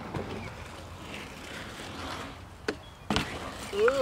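BMX bike tyres rolling over a concrete skatepark bowl, with a sharp clack about three seconds in; a voice starts just before the end.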